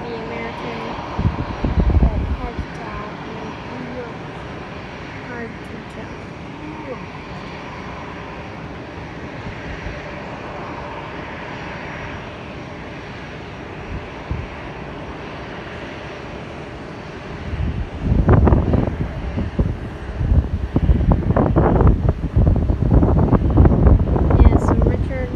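Distant jet airliner engine noise as an aircraft comes in to land, a steady hum. About three quarters of the way through, a much louder, rough low rumble sets in and keeps surging to the end.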